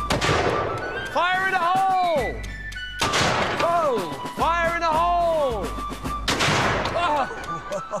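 Black-powder cannon firing: sudden loud blasts, each trailing off over about a second.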